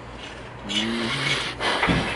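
A wordless vocal noise from a man close to the microphone, with a rush of breathy noise about a second in, followed by a short, louder burst of noise near the end.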